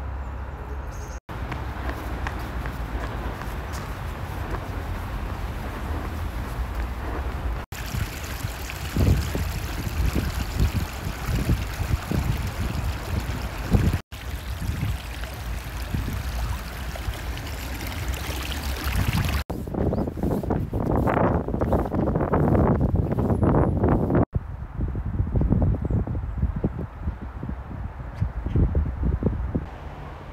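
Running water of a shallow stream trickling and gurgling, with a low rumble underneath. The sound changes abruptly every five or six seconds as the shots cut, and grows louder near the end.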